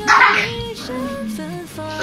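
A dog barks once, loud and short, at the very start, over soft background music with a held, gliding melody.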